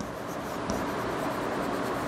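Chalk scratching steadily on a blackboard as a word is written by hand.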